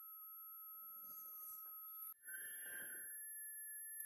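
Near silence: faint room tone with a thin steady high whine. After a brief dropout about two seconds in, the whine comes back at a higher pitch.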